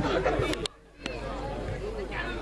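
Sideline spectators' voices chattering, broken about half a second in by a sudden gap of near silence, under half a second long and framed by clicks; quieter chatter follows.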